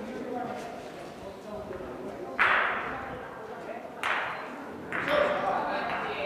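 Gateball mallet-and-ball strikes: three sharp, hard clacks with a brief ring, the first the loudest, the last two close together.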